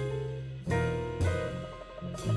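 Live jazz on an acoustic grand piano: the pianist plays chords and runs over low bass notes, with the band accompanying.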